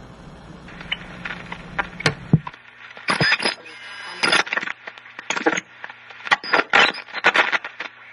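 Irregular sharp clicks and crackles of an electronic sound collage, over a low hum that stops about two and a half seconds in, with faint thin high tones behind them.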